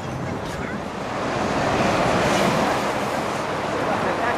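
Sea waves washing on the shore with wind buffeting the microphone: an even rushing noise that swells about halfway through.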